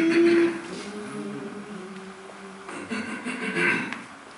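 Male voices singing a cappella, holding a sustained note that is loudest at the start, then a new vocal phrase near the end.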